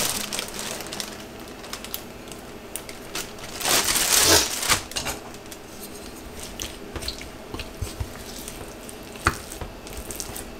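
Wooden spatula scraping and clicking against a glass bowl as whitebait is mixed into mashed rice, with a louder plastic-bag rustle about four seconds in and a couple of sharp clicks near the end.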